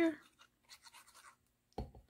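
Faint scratching of a fine-tip glue bottle's metal nozzle drawn across cardstock as PVA glue is laid on, followed by a short soft knock near the end.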